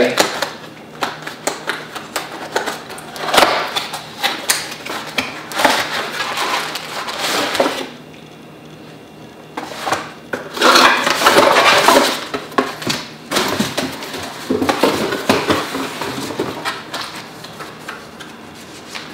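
Cardboard product box and its inner packaging being handled and unpacked: irregular rustling, scraping and light knocks of cardboard, plastic and paper, with a brief lull about halfway through.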